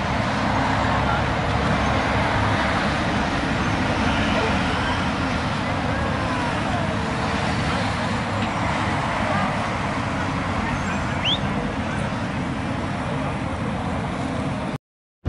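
Steady loud background din with indistinct voices mixed in, typical of a busy kebab shop dining room.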